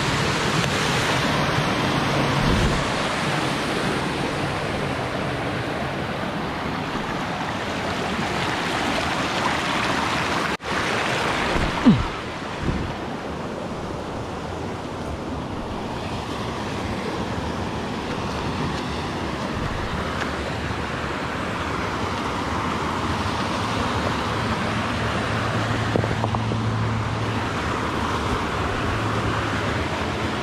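Creek water rushing over rocks and small cascades, a steady rushing noise that breaks off for a moment about ten seconds in and runs a little softer after about twelve seconds.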